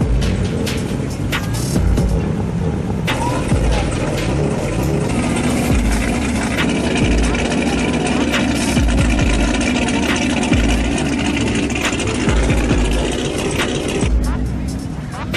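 Sports cars driving slowly past one after another, engines running at low speed, with a steadier engine tone from about five seconds in as a Chevrolet Camaro passes. Music with deep thumps plays throughout.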